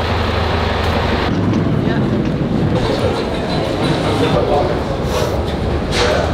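Steady vehicle noise: a bus engine running with a low hum. About a second in this changes to a broader steady rumble with voices murmuring in the background.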